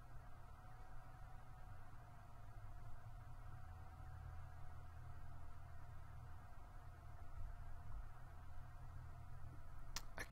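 Faint steady low hum with a thin steady tone above it: background room tone, with no distinct event.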